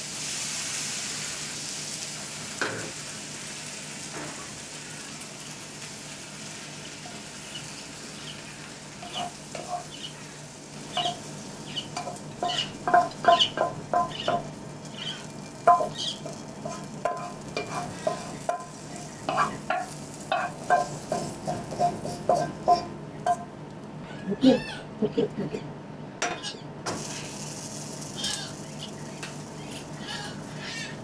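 Vegetables sizzling in a hot frying pan, fading over the first few seconds. Then a utensil scrapes and taps against the pan in quick runs of ringing clinks as the sauté is scraped out onto a plate, over a steady low hum.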